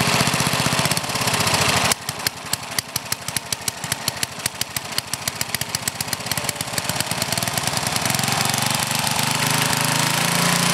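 Old Briggs & Stratton small engine with a one-piece Flo-Jet carburetor running fast. About two seconds in it drops suddenly to a slow idle with separate firing beats, then gradually speeds back up over several seconds to a steady fast run.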